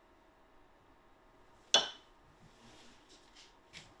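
A plastic syringe being drawn full of water and lifted from a drinking glass, its tip knocking the glass once with a short, bright clink a little before halfway. This is followed by faint handling noise.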